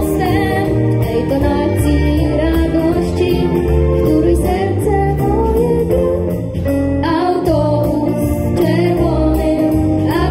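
Small live ensemble of violins, viola, cello, clarinet, piano, double bass and drums playing an upbeat 1950s Polish popular song, with a steady beat under the melody.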